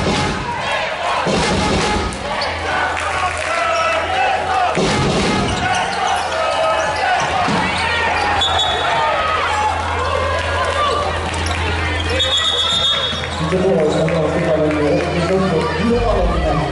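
Sounds of an indoor handball game: a handball bouncing on the wooden court and players' shoes on the floor, under a steady wash of voices from players and crowd in a large hall.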